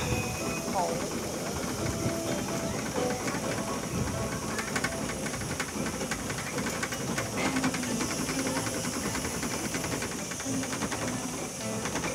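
Steady hissing and running noise of a children's cheetah-car ride in motion, with faint distant voices and snatches of music.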